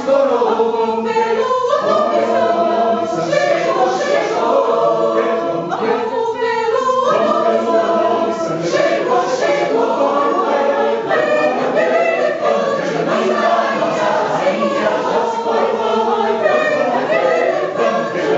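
Mixed choir of men's and women's voices singing a maracatu arrangement, with sustained chords that move in pitch.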